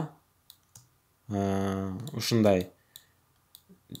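A few faint, sharp computer clicks: two about half a second in, then a quick run of three near the end. In the middle a man's voice holds one long drawn-out "aa".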